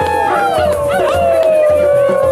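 Several voices howling in long, wavering tones that overlap and slide down in pitch, over a soft low drumbeat about twice a second.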